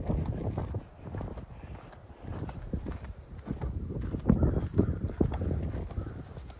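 A run of irregular low thuds and knocks, like handling noise from a camera carried on the move, loudest about four to five seconds in.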